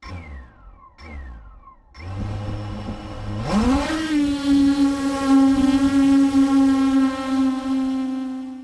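Eight-inch FPV quadcopter (iFlight XL-8 with Brother Hobby Avenger 2806.5 1700kv motors on 8-inch props) heard from its onboard camera. It starts with two brief motor blips that wind down, then a low steady hum at armed idle. About three and a half seconds in, the motors rise in pitch to a steady whine as it takes off and climbs.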